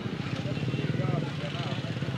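A motorcycle engine running nearby, a steady low drone with rapid even pulsing, with faint chatter of people behind it.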